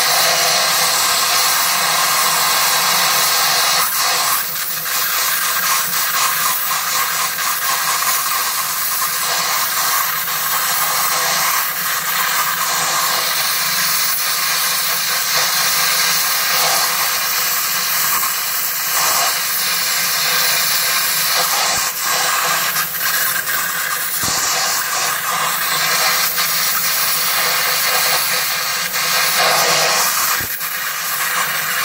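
Gas torch flame running turned up high, a steady loud hiss, melting platinum in a ceramic crucible. The hiss dips briefly about four seconds in.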